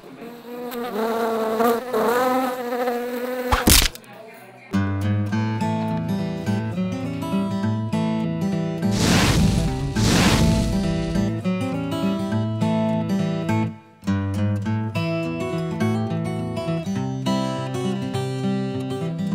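A housefly buzzing, its pitch wavering up and down, cut off by a single sharp smack a little under four seconds in. After a short lull, strummed guitar music plays through the rest, with a rushing swell around the middle.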